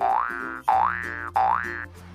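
Three identical cartoon 'boing' sound effects in quick succession, each a short upward pitch slide, over soft background music.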